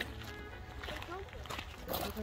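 Faint voices outdoors over quiet background music.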